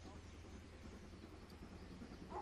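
Near silence: faint outdoor background with a low, steady rumble.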